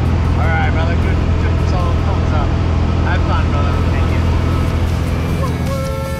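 Steady low drone of a single-engine jump plane's engine and propeller, heard from inside the cabin in flight, with voices calling over it.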